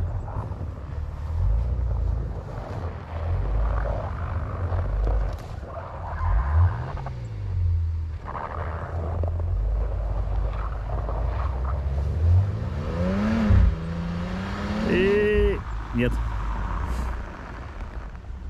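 Jeep Grand Cherokee's engine working hard as it tries to climb a snowy slope, over a heavy low rumble; about twelve seconds in the revs rise sharply, then climb again a couple of seconds later.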